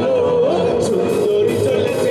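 A man singing a Bengali song live into a microphone over a band with drums and keyboard, amplified through a PA, holding a long wavering melody note.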